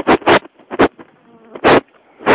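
Wind and handling noise on a phone's camera microphone: a series of short, loud, irregular buffeting bursts, the longest and loudest near the end.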